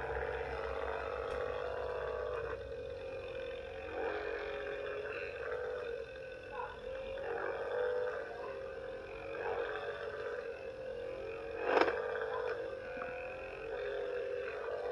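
Percussion massage gun with a flat face head running at its fourth speed setting while pressed into a leg: a steady buzzing hum whose pitch wavers slightly under the pressure. A single sharp knock near the end.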